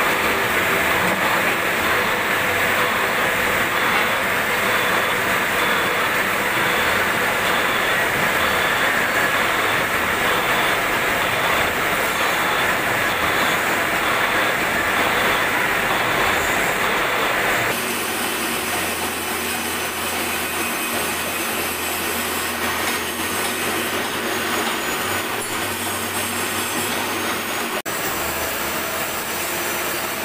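Metal lathe running, its cutting tool turning a large steel ship main-engine bearing part held in a four-jaw chuck: a steady harsh cutting hiss. About eighteen seconds in the sound changes abruptly to a slightly quieter, thinner cut with a faint high whine.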